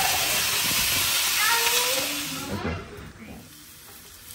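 Back bacon searing in a hot cast iron skillet, a steady sizzle that stops abruptly about two and a half seconds in.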